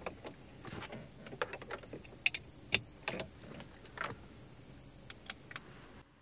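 An iPhone and its USB cable being handled and plugged in: light scattered clicks and rustles, with two sharper clicks about two and a half seconds in.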